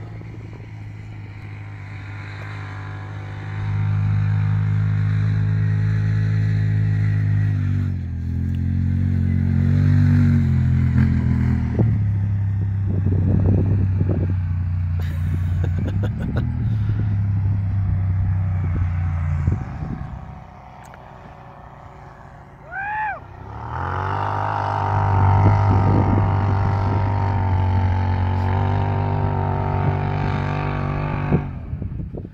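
A motor vehicle engine running with a steady low hum that shifts pitch in steps. It drops away about twenty seconds in, and a short rising-and-falling tone comes just before the engine sound returns.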